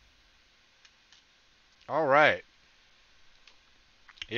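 Two faint clicks, typical of a computer mouse, about a second in, then a short wordless vocal sound from a man about two seconds in, rising then falling in pitch. The vocal sound is the loudest thing.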